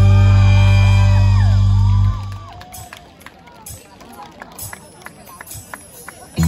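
A mor lam band's loud held closing chord over the stage speakers, which cuts off abruptly about two seconds in. The audience is left murmuring, with a few scattered claps and whoops.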